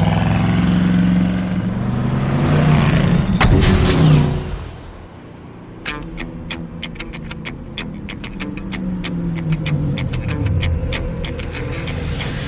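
Old Camaro muscle-car engine revving hard as it speeds off, rising in pitch into a loud rushing pass-by about four seconds in, then falling away. Film score music follows, with a long run of sharp, evenly spaced clicks.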